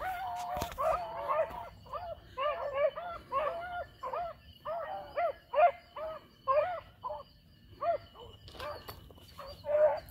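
A pack of beagles baying as they run a rabbit: a steady string of short, arched bawls, about one or two a second, from several hounds at once.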